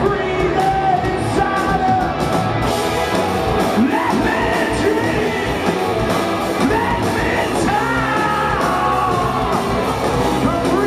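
Rock band playing live and loud in a hall: electric guitars, bass and drums, with a man's wordless vocal sliding up and down in pitch over them.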